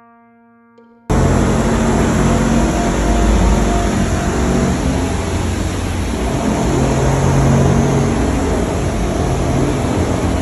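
Faint music fades out, and about a second in the sound cuts abruptly to loud, steady background noise: a constant rush with a low hum underneath, the room's ambience on location.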